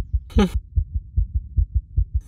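A low, rapid bass pulse from the film's background score, about five or six thumps a second, like a quickened heartbeat. One short spoken word cuts in about half a second in.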